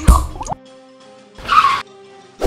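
Two short, loud action sound effects about a second and a half apart, over steady background music. The first is heavy in the low end, like a hit; the second is a brief rush of noise.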